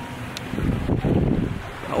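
Wind buffeting the microphone: a gusty rumble that swells about half a second in and eases before the end.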